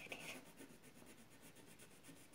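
Faint scratching of a black drawing tool on paper, a quick run of short back-and-forth strokes as an area is coloured in.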